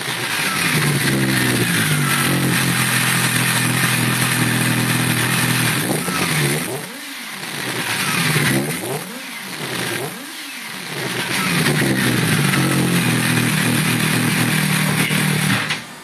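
Kawasaki Ninja H2's supercharged inline-four engine being revved while warming up. It is held at a steady raised speed for several seconds, then gets three quick throttle blips that rise and fall about halfway through, then is held steady again before dropping away sharply at the very end.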